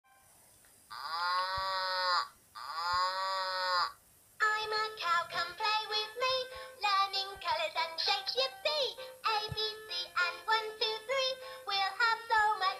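VTech Moosical Beads electronic cow toy playing through its small speaker: two drawn-out recorded moos, then from about four seconds in a cheerful electronic tune with synthetic singing.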